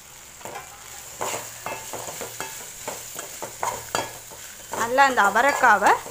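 Metal ladle stirring and scraping chopped broad beans around an aluminium kadai, with a light sizzle of frying. Scattered scrapes and clicks at first; from about five seconds in the stirring gets much louder, the ladle scraping the pan with a squeaky tone that swoops up and down.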